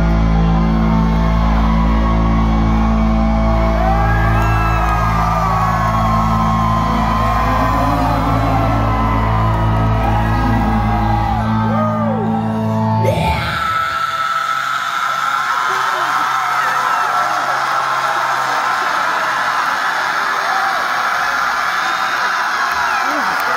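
Live rock band ringing out a loud held final chord on electric guitars and bass while the crowd whoops and yells. About thirteen seconds in the band stops and the audience goes on cheering and yelling.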